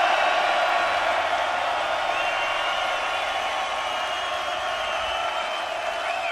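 Large open-air festival crowd cheering and shouting after a song ends, a steady roar that eases off slowly.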